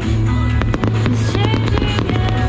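Fireworks crackling and popping in many quick, irregular cracks, over loud music with a sustained melody.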